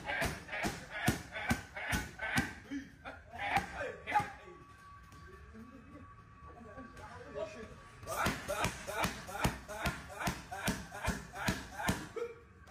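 Gloved punches and kicks striking Thai pads in a quick run of smacks, two or three a second. They stop for about four seconds in the middle, then another flurry of strikes follows.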